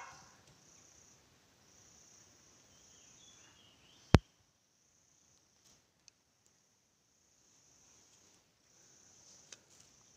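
Insects trilling faintly in a high, steady band that swells and fades in stretches of a second or so, with a single sharp click about four seconds in, the loudest sound.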